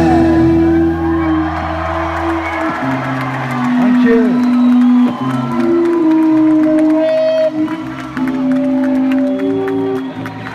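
Amplified electric guitars ringing out in long, held tones at the close of a rock song, with the bass stopping about a quarter of the way in. The crowd cheers and whoops.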